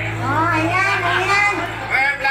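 High-pitched voices talking and calling out over a steady low hum.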